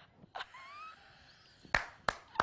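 A woman laughing almost soundlessly in fits: short breathy gasps and a faint rising squeak, then a sharp smack near the end.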